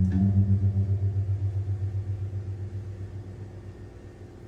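Electric guitar through an amplifier: a low note struck just before, ringing on with a slight waver and slowly dying away.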